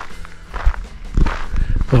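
A few irregular footsteps on the ground as the person filming walks.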